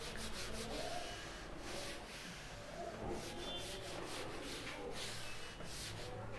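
Blackboard duster rubbing back and forth over a chalkboard, erasing chalk writing in a run of faint repeated strokes.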